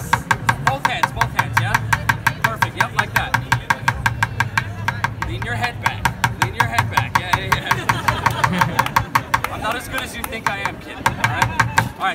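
A drumstick taps a hand-held pot in a steady, quick rhythm of about five strikes a second, each strike ringing briefly. A steady low hum runs underneath.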